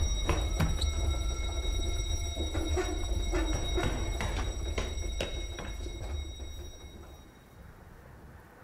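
Dark, cinematic music-video soundtrack: a deep rumbling drone with scattered sharp clicks and knocks and a thin steady high tone. It fades away over the last couple of seconds.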